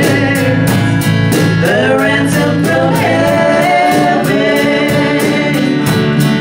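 Live band music: acoustic guitars strummed in a steady rhythm under singing voices.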